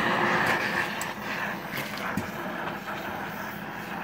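Oxy-fuel torch flame hissing steadily while it heats a 3/8 steel bar in a vise. It is louder for about the first second, then settles quieter.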